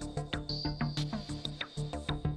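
Live modular synthesizer music: a fast, even pulsing sequence over a repeating bass note, with a thin high tone held above it.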